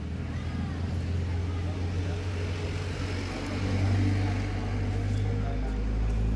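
Steady low mechanical hum from a printing machine, swelling a little about halfway through, with a man's voice faint over it.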